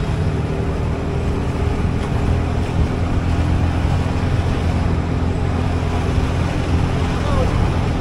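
Motorcycle engine running steadily at low speed while riding, with wind noise on the microphone.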